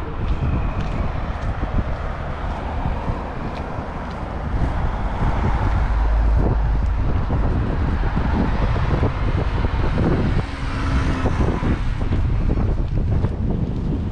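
Wind buffeting the microphone in gusts, with road traffic noise swelling through the middle and fading near the end, as a car passes.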